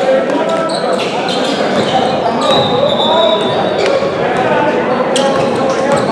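Basketball bouncing on a hardwood gym floor in play, several sharp bounces, under overlapping voices of players and onlookers echoing in the hall. A brief high squeak sounds about halfway through.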